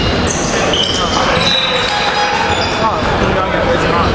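A basketball being dribbled on a hardwood gym floor, heard in a large echoing hall, with voices in the background.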